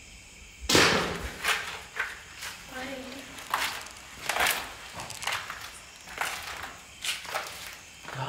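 A sudden loud thump about a second in, then a run of irregular knocks and scuffs, roughly one every half second to a second.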